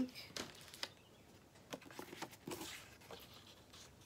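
Cardstock being handled on a craft mat: faint rustles of paper sliding and light taps as the pieces are picked up and stacked.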